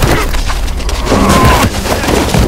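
Film fight-scene sound effects: loud impact hits and cracking, splintering noise like dry branches breaking as a body is thrown to the ground.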